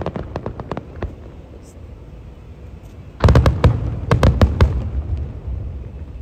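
Aerial fireworks: a patter of sharp crackles in the first second, then from about three seconds in a loud volley of booms and rapid cracks from exploding shells, tailing off over the next two seconds.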